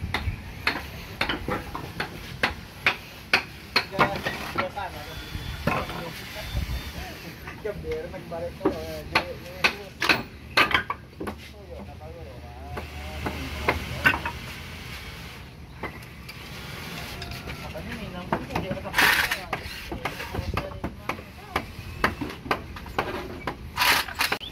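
Hammer strikes and wooden knocks as workers strip timber formwork from a poured concrete wall: many sharp, irregular blows.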